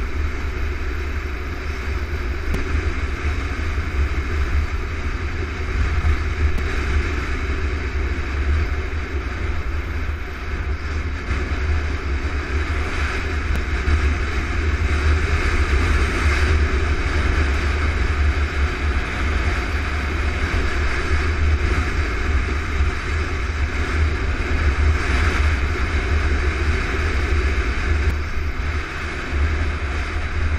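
Kawasaki KLR650 single-cylinder four-stroke engine running at a steady cruise under a dirt-road ride, mixed with a heavy low rumble of wind on the microphone. The level holds steady throughout, swelling slightly at times.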